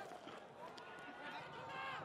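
Faint stadium crowd noise with distant voices.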